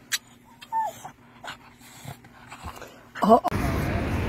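A dog whimpering in a few short, high whines that fall in pitch, with faint clicks between them. Near the end comes a louder rising-and-falling whine or yelp, then a steady outdoor rush of noise.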